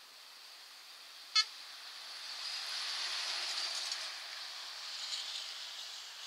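Scania lorry passing on a highway, its tyre and engine noise swelling to a peak about halfway through and then fading. A single short horn toot sounds about a second and a half in.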